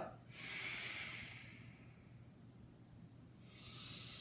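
A man breathing audibly and forcefully through paced cat-cow movements: one long breath of about a second and a half, then another starting near the end. The breaths are deliberate and quick, to build body heat.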